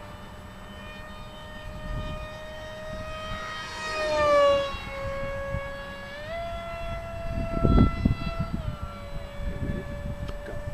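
Electric motor and propeller of a foam scratch-built RC F-15 model whining steadily in flight. The pitch drops as the plane passes closest about four seconds in, where it is loudest. The whine rises as the throttle is opened about six seconds in and drops back near nine seconds.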